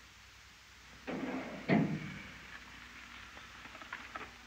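A drawer full of boxed pen-and-pencil sets being handled and slid shut: a short scraping rattle that starts about a second in, is loudest near the middle, then fades away.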